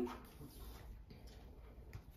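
Quiet room with faint soft brushing and taps of hands moving over tarot cards laid on a wooden table.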